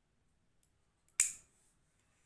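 A disposable lighter struck once about a second in: one sharp click with a short scraping tail.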